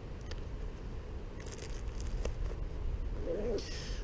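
Quiet outdoor background: a low steady rumble with a few faint clicks, and two short soft hisses, one about a second and a half in and one near the end.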